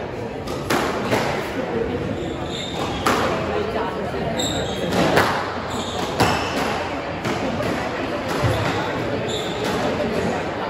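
Squash rally: the ball cracking off the rackets and the walls every second or two, with short high squeaks of court shoes on the wooden floor.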